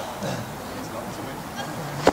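Indistinct voices of people talking in the background, with no clear words.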